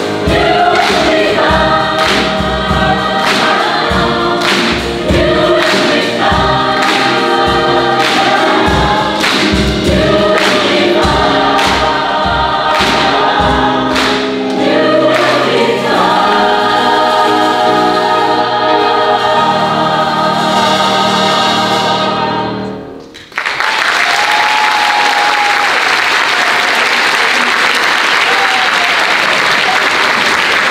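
Mixed choir singing an upbeat gospel-style song over a steady beat of sharp hits, about three every two seconds, then holding a long final chord that cuts off sharply about 23 seconds in. Audience applause follows to the end.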